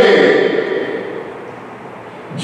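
A man's speaking voice finishing a phrase, its echo fading slowly in a large church, then a short pause of low room tone.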